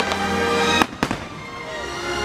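Fireworks show: sharp bangs of shells bursting, about a second in, over music.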